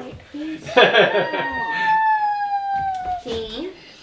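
A young child crying: one long wail that starts about a second in, lasts about two seconds and slowly falls in pitch.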